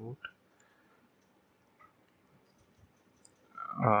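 A few faint, widely spaced computer keyboard keystrokes clicking over a quiet room.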